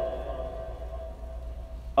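Room tone: a steady low hum with a faint held tone that fades away.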